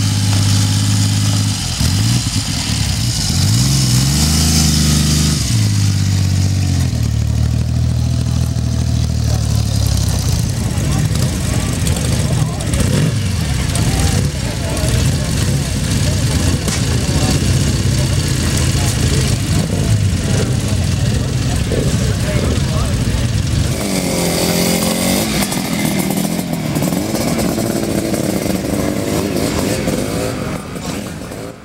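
A three-cylinder four-stroke motorcycle engine idling and being blipped, its revs rising and falling a few times in the first several seconds. Then several motorcycle engines run together. Near the end a single motorcycle revs up and down as it rides off.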